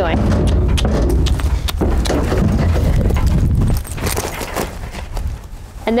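A horse backing quickly out of an aluminium stock trailer: hooves knocking and scraping on the bedded trailer floor and the trailer rattling, dying down after about four seconds.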